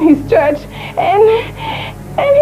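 A woman wailing and crying out, her high voice rising and falling in pitch.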